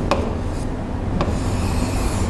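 Marker pen writing on a whiteboard: short squeaky strokes with a couple of taps, then one longer rubbing stroke near the end as a line is drawn across the board.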